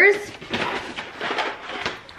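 Paper grocery bag rustling and crackling as a hand rummages inside it and lifts out a packaged item, a rapid run of small crinkles and scrapes.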